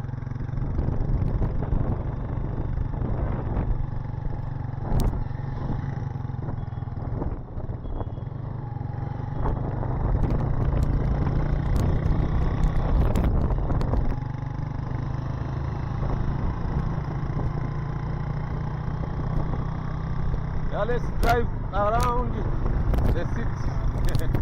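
Motorcycle engine running steadily while riding through town streets, a continuous low drone with road and wind noise. A voice is heard briefly near the end.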